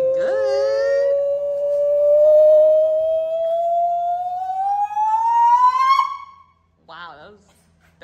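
A man's voice holding one long sung note. Its pitch slides slowly upward, then climbs faster before it breaks off about six seconds in. A few short spoken words follow.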